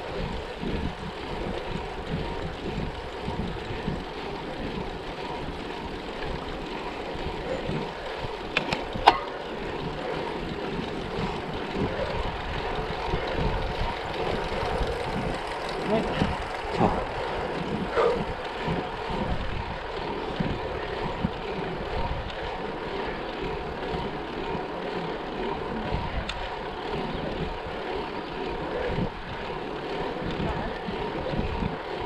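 Wind buffeting the microphone of a camera worn by a road cyclist riding on asphalt: an uneven, gusting rush with a faint steady hum under it. A single sharp click sounds about nine seconds in.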